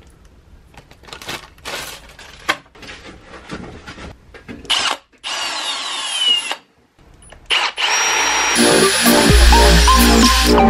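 Scratching and clicks, then a cordless drill running in short spells, with its pitch falling as it winds down, as it drills into a wooden board. Electronic music with a beat and bass comes in about nine seconds in.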